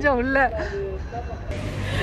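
A woman's voice speaking briefly, then after a sudden change about halfway through, a steady rush of wind on the microphone.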